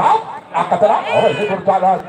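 People's voices talking around a volleyball court, with one high-pitched, drawn-out cry that rises and then holds, about a second in.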